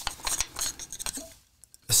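Hard plastic clicking and scraping as the black impeller sensor housing of a Toro TFS flow sensor is twisted and worked loose from its PVC tee: a quick run of small clicks and knocks that stops about a second and a half in.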